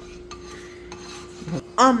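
Spatula scraping lightly around a nonstick frying pan on a portable gas stove, spreading the oil before the egg goes in: quiet soft scrapes and a few light clicks.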